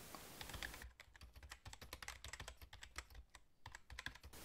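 Faint computer keyboard typing: a quick, irregular run of key clicks starting about a second in, over near silence.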